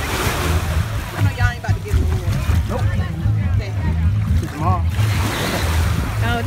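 Shallow sea water splashing and lapping around wading legs, over a steady low rumble of wind on the microphone, with faint voices.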